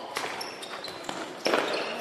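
Handball training play in a sports hall: sneakers squeaking briefly several times on the hall floor and the ball thudding, the loudest impact about a second and a half in, all with a hall echo.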